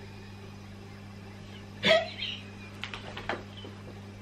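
Women's stifled laughter: one sudden sharp gasping burst about two seconds in, then a few shorter breathy bursts, over a steady low hum.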